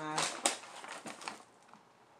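A plastic snack-cracker bag crinkling as it is picked up and handled, with one sharper crackle about half a second in; the crinkling dies away after about a second and a half.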